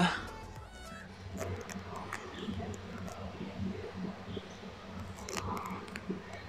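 Water from the ram pump's delivery pipe trickling into a 5,000-litre plastic Jojo water tank, heard faintly through the tank wall with a few small knocks: the pumped water has reached the top tank.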